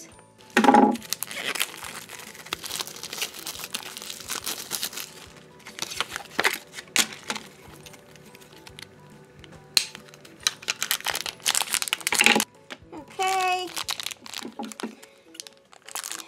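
Crinkling and crumpling of a toy blind pack's cardboard box and foil bag as it is handled and opened, with many irregular sharp crackles. Soft background music plays underneath.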